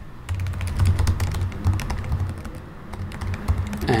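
Typing on a computer keyboard: a quick, irregular run of key clicks.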